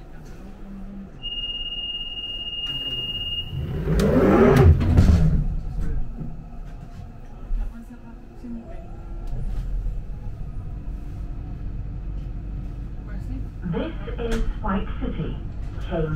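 London Underground Central line train at a station stop: a steady high beep for about two seconds, then a loud rush with a thump about four seconds in as the doors close, followed by the train's steady low hum. Near the end the train's recorded announcement begins.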